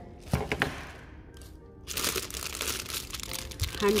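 Clear plastic bag crinkling as it is handled, with a few sharp crackles near the start and denser crinkling through the second half.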